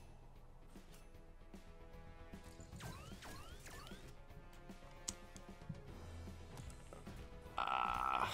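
Zap Attack online slot game audio: quiet background music with clicks as the reels spin and stop, three quick rising sweeps about three seconds in, and a louder game sound starting near the end as a win is counted up.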